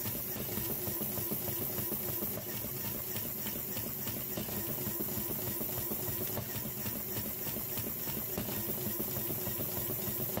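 A LEGO EV3 motor shaking a plastic sorter, a steady fast rattle of LEGO frames and pin connectors jostling in the trays as they are sieved through graded holes.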